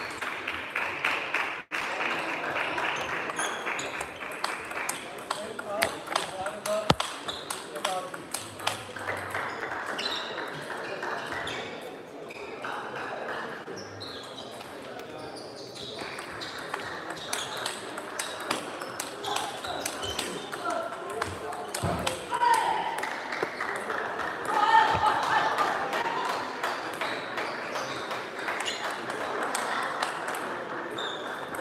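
Table tennis balls clicking on tables and rubber bats in many quick, irregular ticks over the hum of people talking in a sports hall.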